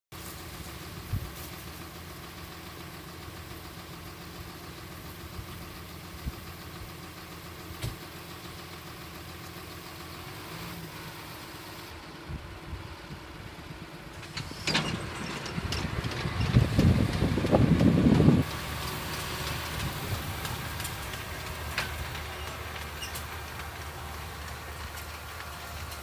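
John Deere 6930 tractor's six-cylinder diesel running steadily under load as it pulls a seed drill across the field. About fifteen seconds in, a much louder rough rumble comes in for three or four seconds and cuts off abruptly, leaving the engine drone again.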